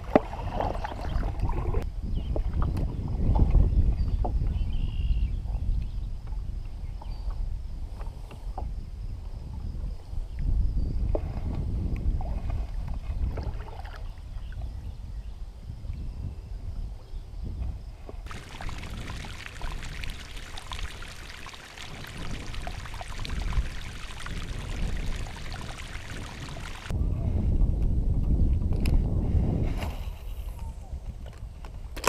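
Kayak being paddled on a lake: paddle strokes and water sounds over a low rumble that swells and fades. A steady hiss joins in for several seconds in the latter half.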